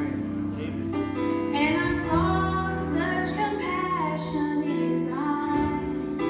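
Gospel song: a woman singing into a microphone over instrumental accompaniment with long held low notes, her voice coming in about a second and a half in.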